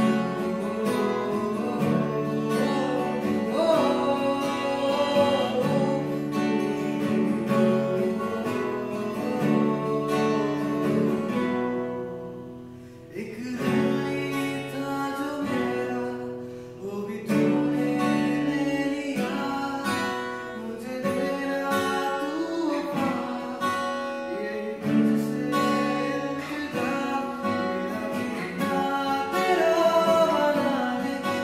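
A man singing a slow Hindi love song, accompanying himself on a strummed steel-string acoustic guitar. The playing drops away briefly twice, about twelve and sixteen seconds in, before the strumming resumes.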